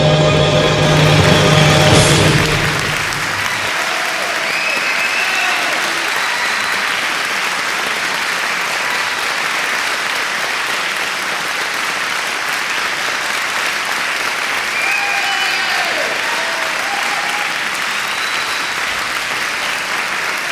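The closing note of the music cuts off about three seconds in, then an audience applauds steadily.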